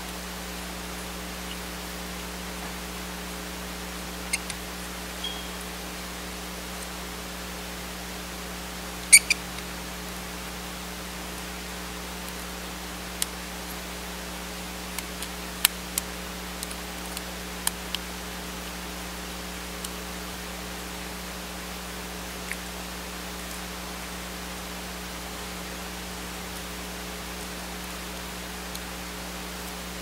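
Steady hiss with a low electrical hum, broken by scattered small clicks of a screwdriver tip against a laptop circuit board and its connector clips. The loudest click comes about nine seconds in, and there is a run of them around the middle.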